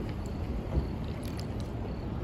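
Steady low rumble of wind buffeting the microphone, with a short thump just under a second in and a few faint clicks after it.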